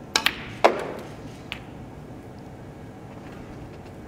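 Snooker balls clicking: the cue tip strikes the cue ball, then the cue ball hits a red with a sharp, louder click that rings briefly as the red is potted. A fainter click follows a second later.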